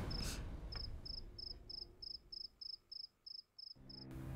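Cricket chirping, a steady high chirp repeated about three times a second, beginning about a second in.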